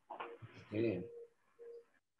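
A man's breath and a short murmured syllable in a pause mid-sentence. Under it, a faint steady low cooing tone comes in and out twice.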